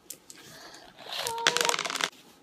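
Candy-coated chocolate Smarties rattling out of their cardboard tube into a hand: a quick run of small clicks in the second half.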